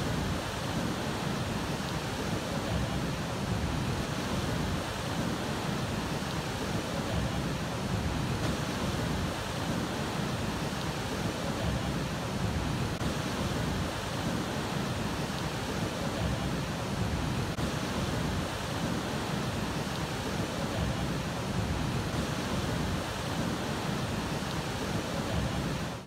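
Steady outdoor rushing noise of wind and churning water, with a low rumble that rises and falls throughout.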